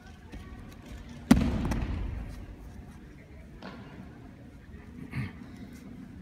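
A breakfall on tatami mats: one loud, sharp slap about a second in as the thrown aikido partner strikes the mat, echoing in the large hall, followed later by two much fainter knocks.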